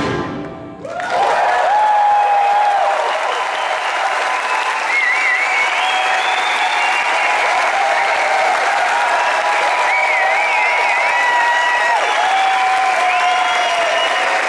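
Concert crowd applauding and cheering with whistles after the rock song ends. The band's final chord dies away at the start, and the applause comes in about a second later and holds steady.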